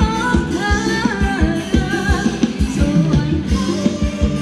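Live Thai ramwong dance band playing, with a singer's melody over a steady drum beat.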